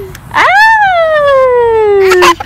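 A toddler's long, loud squeal of delight: it rises sharply just under half a second in, then slides slowly down in pitch.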